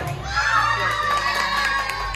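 A group of children shouting and cheering together, with one high voice held long above the others.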